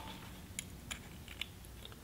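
A few faint, scattered metallic clicks and taps as a new spark plug's electrode gap is set with a gap tool.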